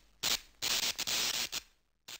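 Electronic static sound effect: hissing bursts of noise that cut in and out, a short burst followed by a longer flickering one of about a second.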